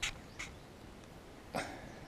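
A person coughing: a few short, sharp coughs, the loudest about one and a half seconds in.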